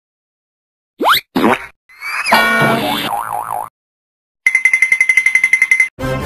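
Cartoon-style sound effects: a quick rising swoop about a second in, then a springy boing with a wobbling pitch, then a high ringing tone pulsing about ten times a second, like a bell, near the end.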